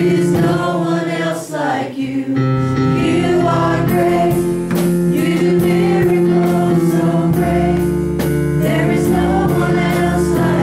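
A small worship team of women and a man singing together into microphones over sustained instrumental chords. A steady light ticking beat comes in high above the music about four seconds in.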